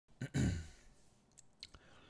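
A man sighs, an audible breath out about half a second long, close to the microphone, followed by a few faint clicks.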